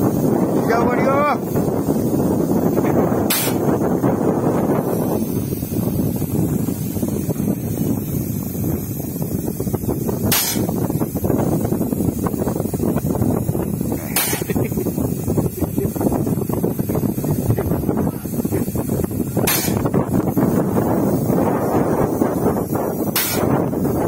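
Airless paint-spray rig at work: a steady low rumble, broken five times, a few seconds apart, by a short sharp hiss of air from the wheeled pneumatic spray pump.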